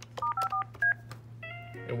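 Yealink T42S desk phone keypad touch-tones as *54 is dialled: four short two-tone beeps in quick succession within the first second.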